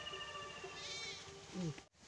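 Faint bleating of a farm animal: a short, wavering call about a second in, after a longer high call that falls slightly in pitch. A brief human voice sound comes near the end.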